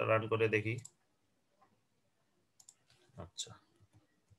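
Computer mouse clicks: a few short, quiet clicks in the second half, after a brief bit of a man's voice at the start.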